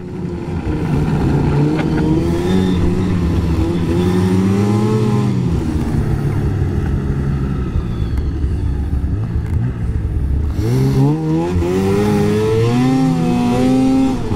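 A 2024 Arctic Cat Catalyst 600 snowmobile's two-stroke engine under way. Its pitch rises for about the first five seconds, drops as the throttle eases and holds lower, then climbs again near the end.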